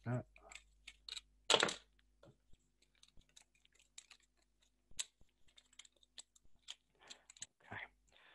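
Scattered light clicks and taps of small hand tools and cardboard pieces being handled on a workbench, with one louder clatter about one and a half seconds in.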